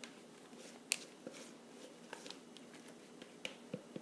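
Faint handling noises over quiet room tone: a few short, sharp clicks and taps, the clearest about a second in and a couple more near the end.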